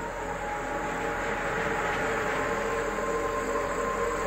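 A steady droning background sound with a few held tones under a hiss that swells slightly in the middle; no distinct impacts or animal calls.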